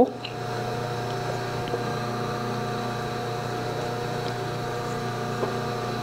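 A steady low electrical hum, with a few faint light ticks.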